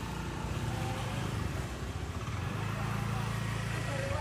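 A motor vehicle engine idling with a steady low hum that grows stronger in the second half, over faint voices.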